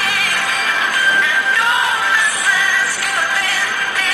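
A man singing, his voice bending and wavering in pitch.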